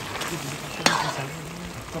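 Goat tripe and aubergine massalé sizzling in its sauce in a large aluminium pot, with one sharp clink of a utensil against the pot about a second in.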